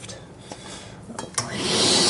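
A few clicks of handling, then about one and a half seconds in a Hoover Constellation canister vacuum comes on and rises to a steady rush of motor and sucked air, its suction sealed against a water lift gauge.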